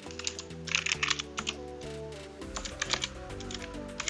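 Computer keyboard keystrokes in several short, quick runs as a terminal command is typed, over quiet background music.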